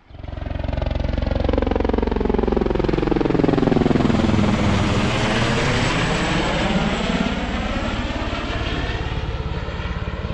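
Helicopter flying low overhead, the rapid chop of its rotor blades coming in suddenly and staying loud. Its tone sweeps down and back up as it passes.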